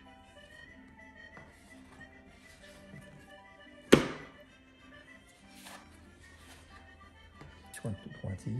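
Quiet background music, broken about four seconds in by one sharp thunk of a plastic dough scraper striking the countertop as it cuts through bread dough, with a few softer knocks near the end.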